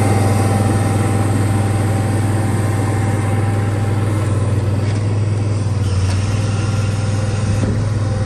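Steady low engine drone at idle: the 2012 Ford F-550 bucket truck's 6.7-liter turbo diesel running together with its gasoline-powered generator.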